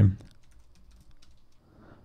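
Faint typing on a computer keyboard: a few scattered keystrokes after a voice trails off.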